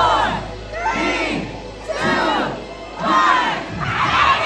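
A crowd shouting and cheering together, with loud rising-and-falling shouts about once a second.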